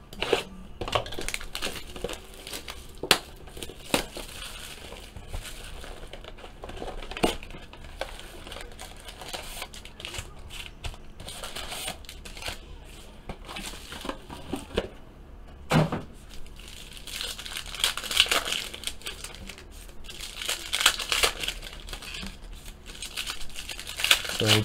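Hands unsealing and opening a cardboard trading-card hobby box and its wrapped packs: crinkling and tearing of plastic wrap, with scattered sharp taps and knocks of cardboard being handled.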